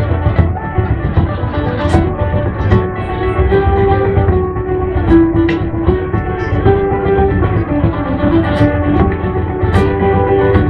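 A live traditional Irish band playing an instrumental tune, with strummed guitars and a bodhrán beating time under a steady melody line.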